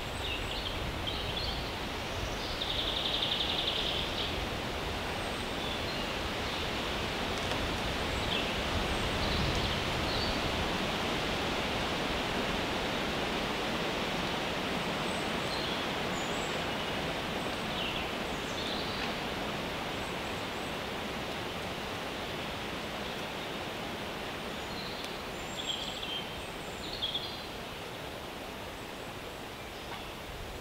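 Forest ambience: wind rustling through the leaves as a steady hiss, with scattered short bird chirps and a brief buzzy call about three seconds in.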